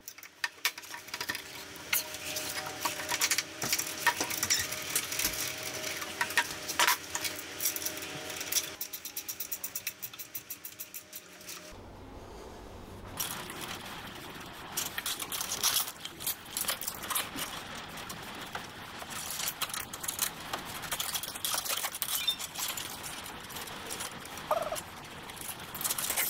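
Hand tools clicking and clattering against metal brake-line fittings and tubing as brake lines are fitted, with a fast even run of clicks, about ten a second, around a third of the way in.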